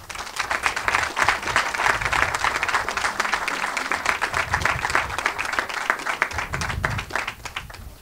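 Small seated audience applauding, the clapping thinning out shortly before the end.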